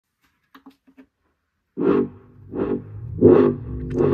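JBL PartyBox Encore Essential party speaker playing music at full volume with bass boost, starting suddenly a little under two seconds in, with heavy bass and a beat about every 0.7 s. A few faint clicks come before the music starts.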